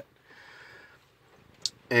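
A pause in a man's speech filled by a faint breath, then a brief high hiss about one and a half seconds in as he draws breath, with his talking starting again near the end.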